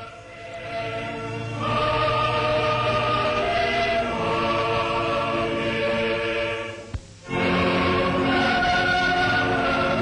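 Combined cathedral choir of boys and men singing a sacred anthem in held chords on an old newsreel soundtrack. The singing swells in over the first second or two, breaks off briefly about seven seconds in, then carries on.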